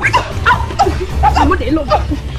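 Several women shouting and yelling over one another as they fight, over background music with a steady low bass line.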